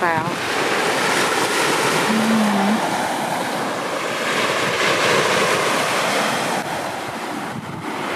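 Surf breaking on a sandy beach, mixed with wind on the microphone: a steady rushing noise throughout.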